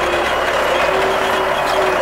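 Tractor engine and a trailed Claas 46 round baler running steadily while picking up hay, heard from inside the tractor cab.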